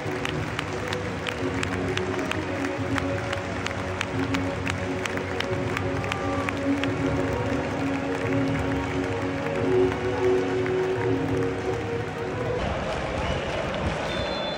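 A football stadium crowd with music or mass singing in long held notes over the crowd's noise, with regular clapping through the first half. Near the end the held notes stop, leaving crowd noise and applause.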